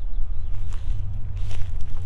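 A person's footsteps on a grassy bank, a few soft steps, over a steady low rumble of wind on the microphone.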